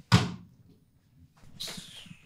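A single loud thump right at the start, dying away quickly. A softer rushing hiss follows near the end.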